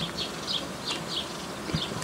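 Honey bees buzzing as they fly in and out of the hive entrances, a steady busy hum of bee traffic.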